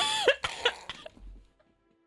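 Laughter: a high laugh falling in pitch, then a short burst, dying away to quiet about a second and a half in.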